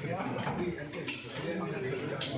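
Plates and serving utensils clinking at a food counter, with one sharp clink about a second in, under people talking.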